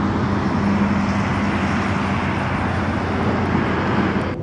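Steady rumble and hiss of vehicle traffic with a low, even hum underneath.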